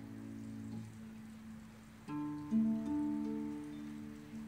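Concert harps playing: a plucked chord rings on and fades, a short lull follows, then a new chord is plucked about two seconds in and more notes follow.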